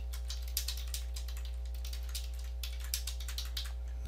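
Computer keyboard typing: an irregular run of key clicks as a line of text is typed, over a steady low electrical hum.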